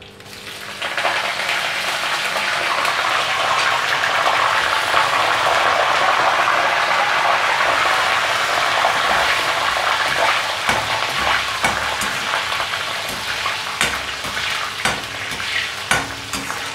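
Fresh curry leaves dropped into hot oil in a kadai with frying green chillies: a loud sizzle that swells up within the first second and keeps going steadily. In the second half a slotted spoon stirs the pan, clicking and scraping against the metal.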